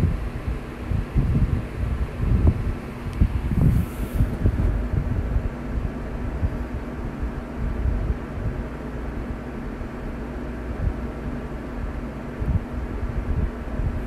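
Low, uneven rumble of microphone noise with a few soft thumps and a faint steady hum.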